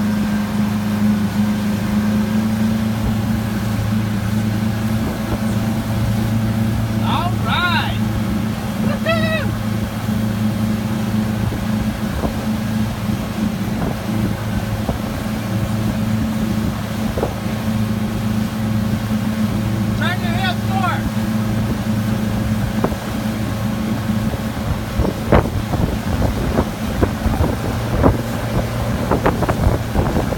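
Pontoon boat's outboard motor running steadily under tow load, a constant low hum over the rush of the wake and wind on the microphone. A voice gives a few short high whoops, about a quarter of the way in and again near the two-thirds mark.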